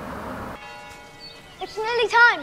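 A brief soft hiss, then a held chord of several steady bell-like tones from the show's soundtrack, with a voice starting near the end.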